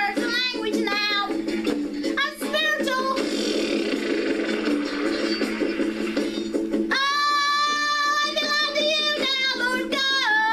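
A woman singing a self-written worship song unaccompanied by speech. From about seven seconds in she holds long, steady notes.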